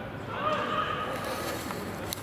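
One long shout from a footballer on the training pitch, rising and then falling in pitch, over the low background hum of the open stadium.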